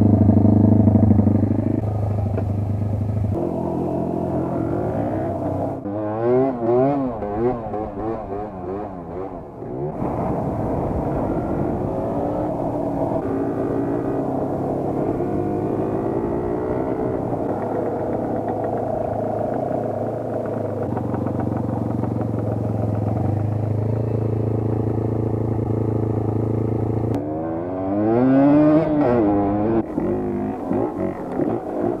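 An off-road motorcycle engine running under way on a dirt track, pulling at a mostly steady pitch. Around a quarter of the way in and again near the end, the revs rise and fall quickly and repeatedly.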